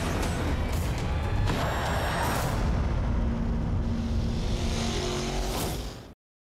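Street-race car engine noise mixed with dramatic music, loud and dense, fading out near the end.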